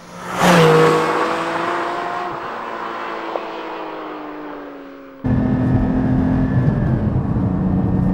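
Porsche 718 Cayman GT4's naturally aspirated 4.0-litre flat-six going past at speed with a sudden loud rush, its engine note then sinking slowly in pitch and fading as the car moves away. About five seconds in, the sound switches to the same engine heard inside the cabin, running steadily with a low rumble.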